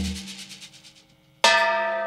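The band's music dies away, then a gong is struck once with a mallet about one and a half seconds in and rings on, a bright clang slowly fading.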